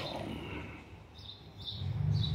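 Faint bird chirps: three short high notes about half a second apart over quiet room tone, with a low hum coming in near the end.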